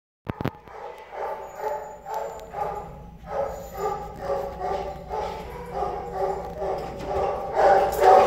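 Dog barking over and over, about two barks a second, muffled behind a closed door, with a couple of sharp clicks near the start.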